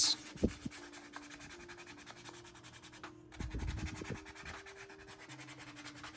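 Sandpaper rubbing by hand over a filler-primed 3D-printed plastic helmet shell: 220-grit paper smoothing down the high spots in the primer coat. The rasping is faint, with a louder stretch of strokes about three and a half seconds in.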